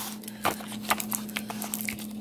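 Thin plastic Lunchables tray and its film wrapping crinkling and clicking as they are handled, a run of irregular small clicks and crackles.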